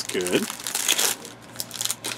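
Crinkling of trading-card pack wrappers and rustling of cards as packs are opened and the cards handled, in irregular bursts with a brief vocal sound just after the start.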